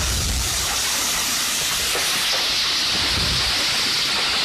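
Heavy rain pouring down onto wet, flooded pavement, a dense steady hiss. A low rumble of wind on the microphone dies away in the first half second.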